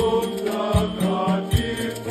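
Men's choir singing a Swahili Marian hymn in unison, accompanied by an electronic organ holding low bass notes, with a low beat about every 0.8 seconds.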